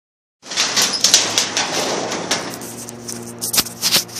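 Rustling and clicking handling noise on the recording phone's microphone, loud at first and easing off, as the recording begins. A faint steady low hum joins about halfway through.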